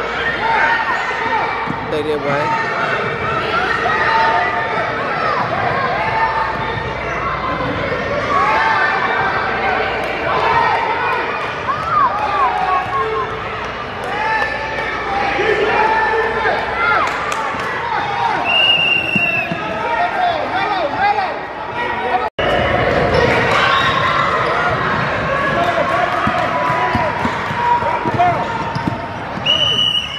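Youth basketball game on a hardwood gym floor: a ball bouncing and players moving, under the steady chatter and calls of many children and spectators.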